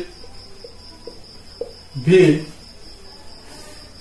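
A cricket trilling steadily in one high, unbroken tone.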